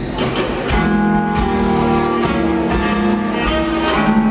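Live jazz-pop band playing an instrumental stretch between vocal lines: held chords with drums and cymbal strokes.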